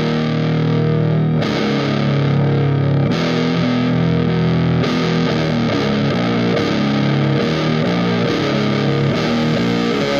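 Doom/stoner metal music: heavily distorted electric guitars and bass playing slow, sustained chords that change every second or two, then move more often after about five seconds.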